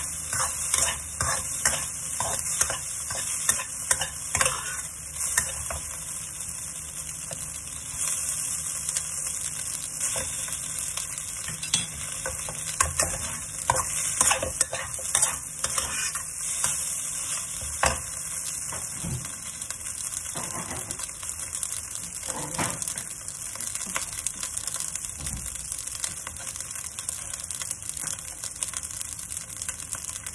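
Fried rice sizzling steadily in a hot wok while a metal turner stirs and scrapes it against the pan, in quick repeated strokes that come thickest in the first few seconds and again in the middle.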